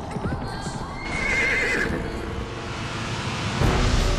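A horse whinnies once, a wavering high call lasting under a second about a second in. Near the end a loud low rumble comes in.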